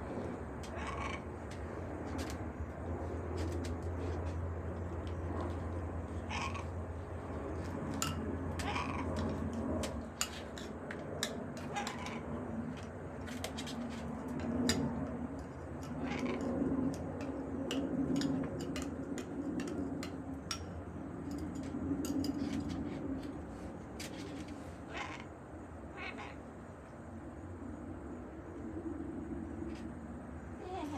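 Pet parrots vocalizing with low, cat-like sounds, a drawn-out low sound through the middle, and many sharp clicks scattered throughout.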